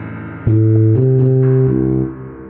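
Tuba line playing three held low notes, one after another, over a synth and piano backing track; the low notes start about half a second in and are the loudest part.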